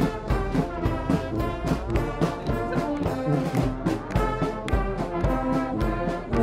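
Marching brass band playing a tune as it passes: trombones, French horn, tuba and trumpets over a steady drumbeat.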